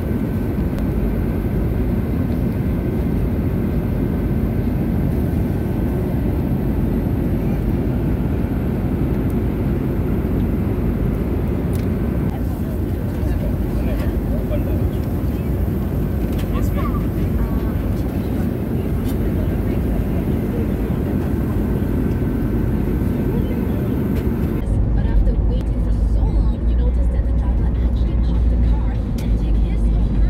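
Steady airliner cabin noise, a broad even rumble with a faint steady whine. About 25 seconds in it cuts to the deeper rumble of a car's interior on the road.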